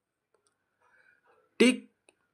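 Near silence with a few faint clicks, then a man's voice says 'take' about one and a half seconds in.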